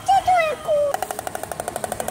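Oriental stork bill-clattering: a fast, even rattle of clicks that starts about a second in. It is the stork's territorial display.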